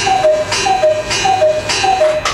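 Cuckoo clock calling the hour: a falling two-note "cu-ckoo" repeated steadily about every 0.6 seconds.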